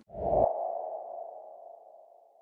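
Title-card sound effect: a short low hit with a quick whoosh, then a single ringing tone that fades away over about two seconds.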